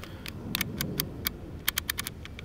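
A quick, irregular run of sharp light clicks and ticks, bunched about half a second in and again near the end, over a low background rumble.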